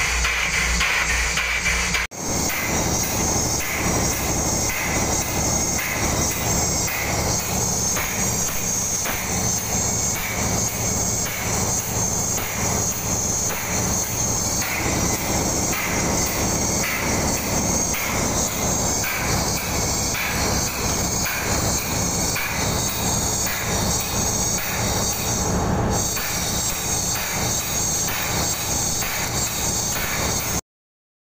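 Background music throughout. From about two seconds in, a steady rhythmic mechanical pulsing runs beneath it: a freshly overhauled Wilden air-operated double-diaphragm pump test-running with a hose connected, pumping water.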